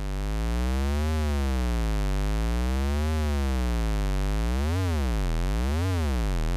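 Malekko Richter Anti-Oscillator tone with its pitch swept smoothly up and down by a Reaktor Blocks LFO fed to its pitch input. The sweep goes slowly at first, about one rise and fall every two seconds, then speeds up to about one a second from about four and a half seconds in.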